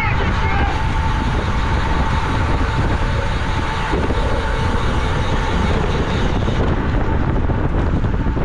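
Wind rushing over the microphone of a camera on a road bike at racing speed, with tyre and road noise beneath it. A thin steady tone runs under it and fades out about six seconds in.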